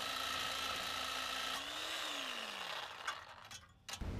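Reciprocating saw (Sawzall) running against a pickup's exhaust pipe to cut it off, with a steady motor whine. About two seconds in, the pitch lifts briefly and then falls away as the saw is released and winds down.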